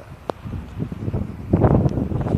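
Wind buffeting the phone's microphone in uneven gusts, strongest about one and a half seconds in.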